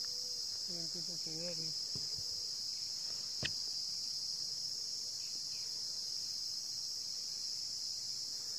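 A steady, high-pitched chorus of insects from the reedbed, a constant shrill drone with no break. A faint wavering call comes through about a second in, and there is a single click a little after three seconds.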